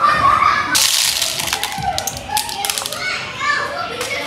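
Children's voices at play, with a burst of rattling as small play beads are poured through plastic toys about a second in. Scattered clicks of beads and plastic toys clattering follow.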